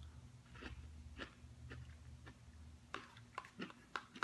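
Faint chewing of a forkful of microwaved frozen meal, with soft wet mouth clicks about every half second.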